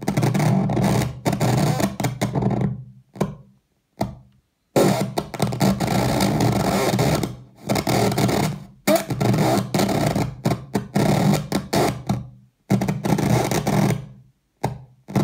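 Circuit-bent speak-and-tell talking toy putting out harsh, distorted glitch noise: choppy buzzing bursts over a low drone that cut out and restart abruptly, with short silent gaps, the longest about three to five seconds in.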